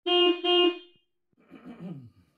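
A horn sounding two short honks of the same steady pitch, one right after the other. Near the end comes a fainter, rough sound that falls in pitch.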